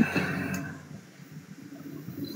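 A short pause in a conversation over an online call. The last word fades out with a brief tail, there is a small click about half a second in, and then only faint hiss and background noise from the call line.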